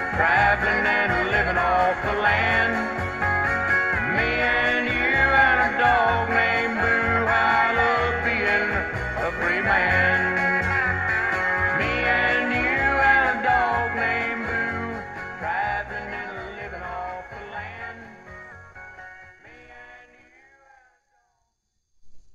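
A 1976 Oaktron speaker driver, bare and without a cabinet, playing the instrumental end of a pop song, which fades out to silence near the end. The driver has a harsh peak around 1.5 kHz but otherwise sounds good.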